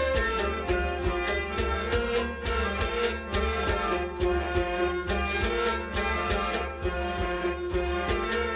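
Instrumental passage of a Kashmiri Sufi ensemble: harmonium and bowed sarangi playing a held, bending melody over a steady beat on a clay-pot drum.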